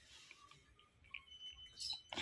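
Near silence: faint room tone with a few soft, scattered small sounds and a thin high tone in the second half.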